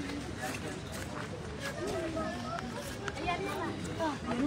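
People talking indistinctly, a low murmur of voices with no clear words.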